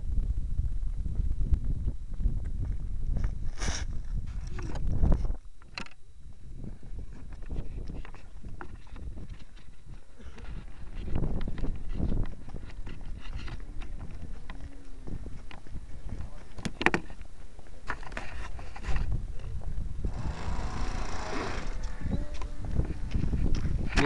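Rubbing and rumbling noise from a small keychain camera's microphone being handled against skin and clothing, with scattered knocks. The low rumble drops off suddenly about five seconds in.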